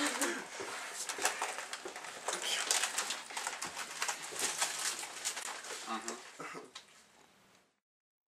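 Indoor handling noise: scattered small clicks, knocks and rustling with brief faint voices, which cut off abruptly about seven seconds in.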